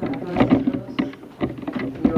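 Handling noise from a handheld camera being swung around: irregular knocks and rubbing on its microphone.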